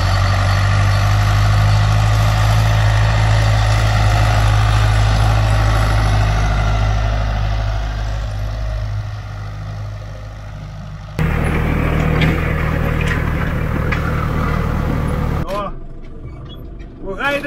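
Farm tractor's diesel engine running steadily under load while pulling a three-metre land roller. The sound sinks lower from about nine seconds in, then jumps back abruptly to a louder, closer engine note with a few sharp rattling clicks about eleven seconds in.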